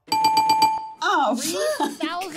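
A bell-like sound effect, a steady ringing tone that trills rapidly for about a second, marking a guess being posted on screen. Voices follow.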